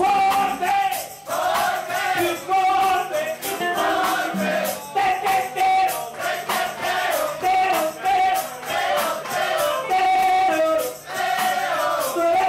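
Live band music: several voices singing a melody together over guitar, bass and a steady drum and percussion beat of about three strikes a second.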